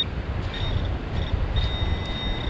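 Handheld pinpointer probe alerting on a buried metal target: short high-pitched beeps, then a longer steady tone near the end as it closes in on a ring in the sand. A steady low rumble runs underneath.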